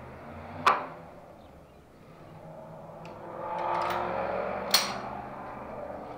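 Two sharp knocks, about a second in and near the end, with a rubbing, scraping noise that swells up between them as the sill board and its metal brackets are handled.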